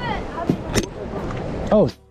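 People talking over a steady rush of outdoor noise, with two sharp knocks in the middle, a moment apart.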